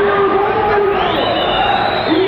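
Street crowd noise with loud, long drawn-out shouted voices held on one pitch.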